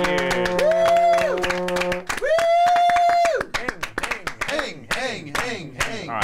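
A small group clapping and cheering with long whooping voices, over a sustained musical note that stops about two seconds in.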